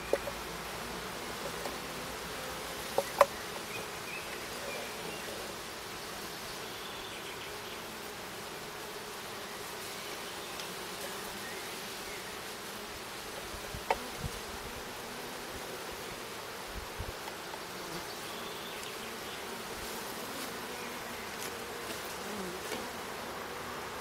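Honeybees buzzing steadily around an open hive. A few short, sharp knocks come near the start, about three seconds in and about fourteen seconds in, from the wooden hive parts being handled and set in place.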